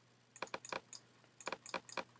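Two short clusters of light, sharp clicks about a second apart, from a computer keyboard and mouse being worked at the desk.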